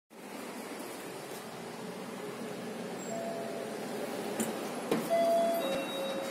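Fujitec lift's arrival chime: a two-note ding-dong, a higher tone stepping down to a lower one, about five seconds in, over the steady hum of the lift lobby. A couple of light knocks come just before it.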